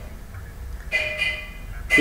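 A steady tone made of several pitches, lasting about a second and starting about a second in, over a low background hum.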